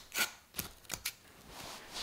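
Knife slicing through the quilted fabric of a mattress cover: a few short cutting strokes in the first second, then a longer, softer rasp of the blade drawn through the cloth near the end.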